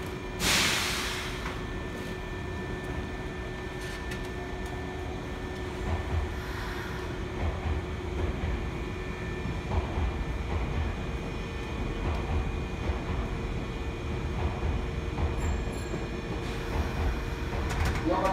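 Nankai electric commuter trains standing at a terminal platform. About half a second in there is a short, loud burst of compressed-air hiss, then a steady electrical hum over a low rumble.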